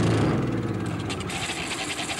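A small engine running steadily with a fast, even beat.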